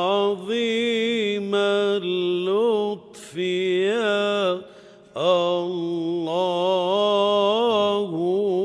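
Unaccompanied solo voice chanting in Arabic, holding long, ornamented notes in phrases broken by short pauses about three and five seconds in.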